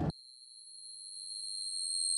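The music cuts off and a steady high-pitched electronic tone, one unwavering pitch, swells louder over about two seconds.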